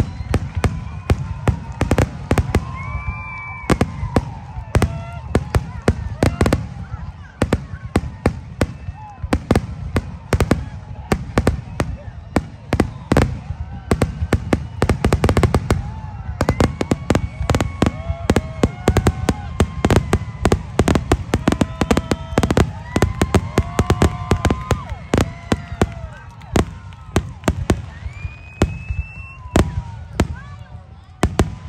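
Aerial fireworks shells launching and bursting in a rapid, continuous barrage of sharp bangs, many per second with no letup, thickest around the middle.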